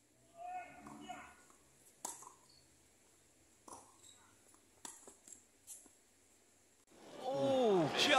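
Tennis ball being struck back and forth in a rally: a few sharp pocks, roughly a second or more apart, with fainter ticks between them. A short voice-like call comes near the start, and a louder voice comes in near the end.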